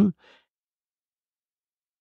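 A man's spoken word ends at the very start, followed by a short, faint breath, then dead silence for the rest.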